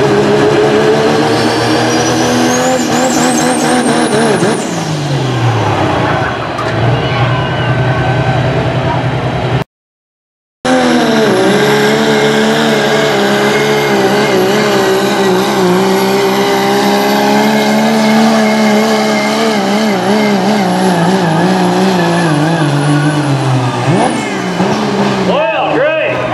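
A modified turbo-diesel pickup pulling a sled at full throttle. In the first few seconds the engine's heavy drone rises with a turbo whistle climbing high, then both fall away. After a brief cut the engine runs on at steady full load, its pitch sagging slowly, and drops off suddenly near the end.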